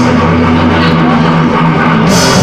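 Live heavy metal band: distorted electric guitars and bass guitar hold ringing notes without cymbals, and the cymbals crash back in right at the end.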